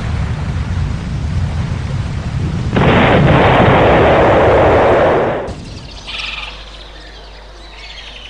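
Deep rumbling of erupting volcanic lava, with a louder rushing burst from about three seconds in to about five and a half seconds, after which it drops away to a low background with faint bird calls.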